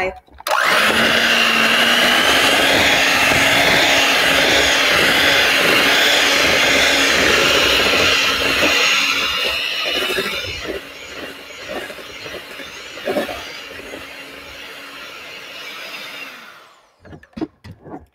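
Hamilton Beach electric hand mixer running on high, its beaters whipping cream cheese and salsa in a bowl. It starts about half a second in, runs loud and steady for about ten seconds, then goes quieter with a few knocks until it cuts off near the end.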